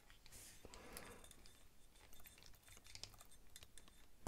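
Near silence, with faint scattered clicks and light scratching from a small screwdriver turning a tiny screw into a folding knife's handle.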